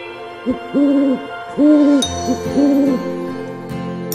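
An owl hooting, five hoots in about three seconds with short and longer ones mixed, over soft background music.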